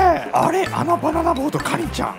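A voice making a run of short pitched syllables, over background music with a steady low beat.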